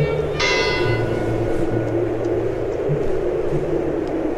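A bell struck once about half a second in, ringing out and fading over about a second, over low sustained music notes and a steady background hiss.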